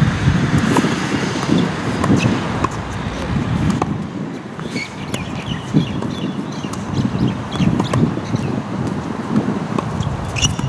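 Tennis balls struck back and forth in a rally on an outdoor hard court: sharp racket hits every second or so, under gusty wind rumbling on the microphone. A few short high squeaks come about halfway through.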